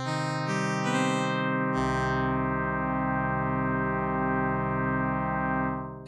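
VCV Rack software lead synth, a short-pulse square wave blended with a triangle wave an octave down, playing a chord. Notes come in one after another over the first two seconds, ring together, then fade out in a release tail near the end. The notes sounding at once show the synth is now set to polyphonic.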